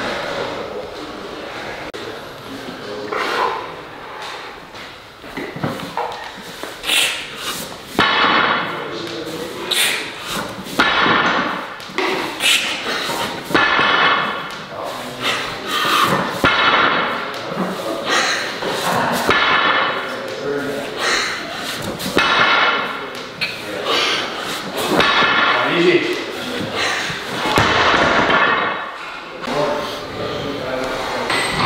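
Axle-bar deadlift reps at 260 kg: the loaded bar and bumper plates thud and clank against the floor on each rep, repeating about every second and a half, with the plates ringing briefly.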